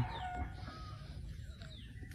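Faint bird calls: a few short thin notes and falling chirps over quiet outdoor background noise.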